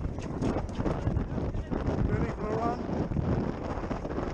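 Wind rumbling on a body-worn GoPro's microphone while the wearer walks, with a person's voice calling out briefly about two seconds in.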